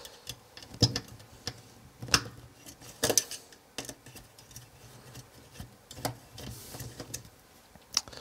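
Irregular small clicks and taps of hands handling the induction heater's circuit board and its cooling fan as the unit is taken apart.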